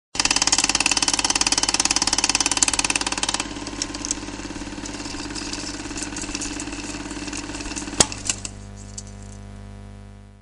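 An engine-like running sound with a fast, even pulse, loud for about the first three seconds and then quieter and steady, with one sharp click about eight seconds in.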